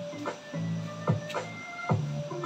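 Background music with a steady beat: sustained notes over a regular hit roughly every second.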